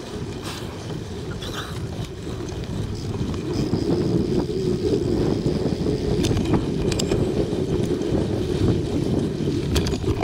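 Mountain bike rolling fast down a dirt forest trail: wind buffeting the bike-mounted microphone and the tyres rumbling over the ground, growing louder as speed picks up about two seconds in. A few sharp clicks and rattles from the bike over bumps.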